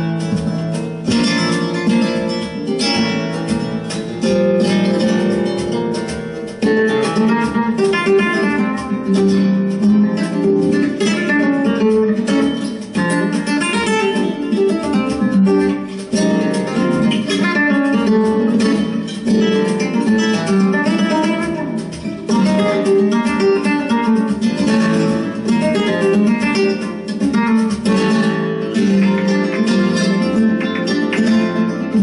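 Flamenco guitar playing a bulería, a continuous run of fast plucked notes and strums. It comes from a recording, not from the guitar in hand, which is held still.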